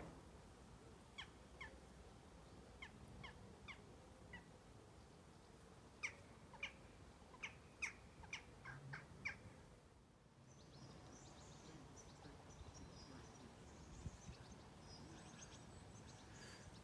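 Faint birdsong in a quiet garden: a run of short, sharp chirps, each sliding downward, for the first half, then, after a brief gap, faint high twittering.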